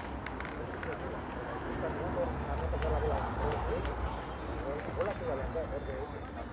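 Background chatter of several people talking indistinctly, over a steady low rumble, with a few faint clicks.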